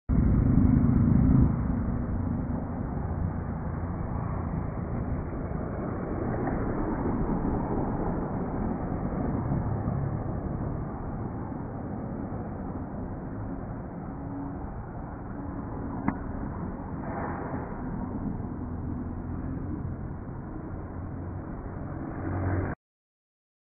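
Road traffic on a busy multi-lane road: a steady rumble of passing cars and trucks, with one sharp click late on.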